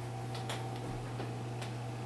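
Quiet classroom room tone: a steady low electrical or ventilation hum, with a few faint, irregular ticks.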